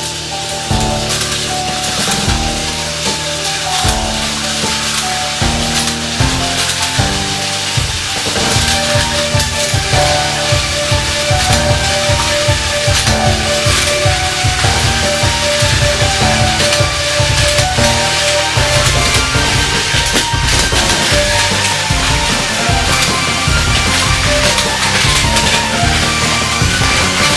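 Background music with a steady beat that gets busier and louder about eight seconds in, over the whirring and rattling of several battery-powered Plarail toy trains running on plastic track.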